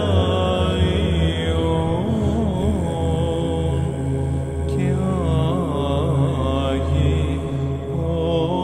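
Greek Orthodox Byzantine chant: a male voice sings a slow, ornamented melody over a steady low held drone (ison).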